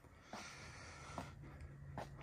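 Almost silent: faint background noise with a low steady hum, coming in a moment after the start, with no distinct event.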